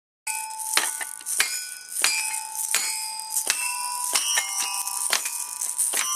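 Toy xylophone with coloured metal bars struck unevenly by a toddler: about ten random notes, each ringing on and overlapping with the next.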